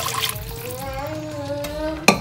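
Water poured into a pot of browned sausage, splashing mostly in the first moments. Over it a small child hums one long, slowly rising note.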